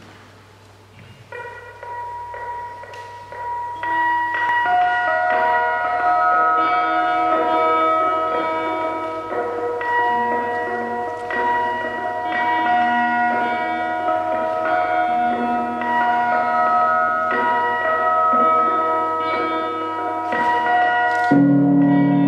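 Fender Stratocaster electric guitar run through effects, ringing chime-like notes that layer and hang on into a sustained ambient wash that swells over the first few seconds. A lower sustained chord comes in near the end, over a steady low hum.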